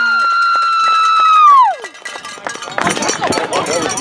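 A spectator's long, high-pitched cheering scream, held on one note and then sliding down in pitch and stopping about two seconds in. Then a mix of several sideline voices shouting and cheering.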